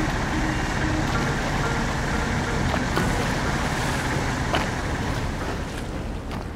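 Small river boat's engine running steadily, with water and wind rushing past the hull.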